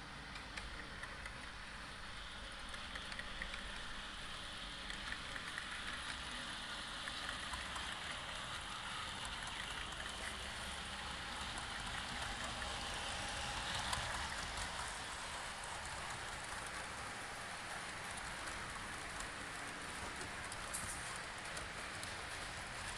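Model train rolling along the layout's track: a steady rattling hiss of metal wheels on rails with the motor's hum, growing louder as the train passes close, loudest a little past the middle.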